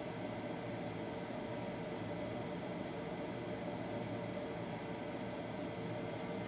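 Steady low hum and hiss of room background noise with faint steady tones, unchanging throughout and with no distinct event.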